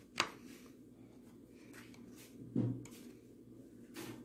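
Quiet room with faint handling: a sharp click just after the start, a brief low voiced sound like a short hum about two and a half seconds in, and a small click at the end.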